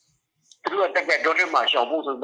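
Speech only: after about half a second of silence, a local resident talks in Burmese, heard as a recorded phone call.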